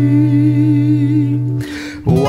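A man's voice holding one long sung note with a slight vibrato over a ringing acoustic guitar chord. Both die away about a second and a half in, followed by a quick breath, and guitar strumming starts again at the very end.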